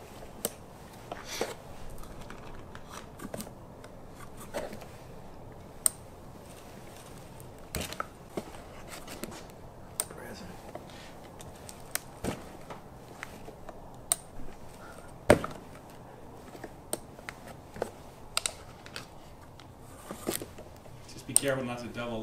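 Irregular small clicks and knocks from an 1858 Remington cap-and-ball revolver being handled during reloading, the cylinder and its parts worked by hand, the sharpest click about halfway through. Some light rustling, as of cardboard, runs under the clicks.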